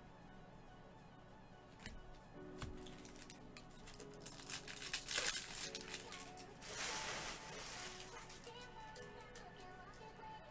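Plastic wrapper of a trading-card pack being torn open and crinkled, in a burst of crackling a little before halfway, with more crinkling just after it, over steady background music.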